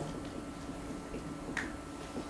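A marker writing on a whiteboard: faint light taps and scratches, with one short sharper stroke about one and a half seconds in.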